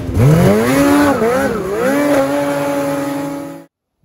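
An engine revving: the pitch sweeps up fast from low, drops and climbs back twice, then holds at a steady high rev before cutting off suddenly near the end.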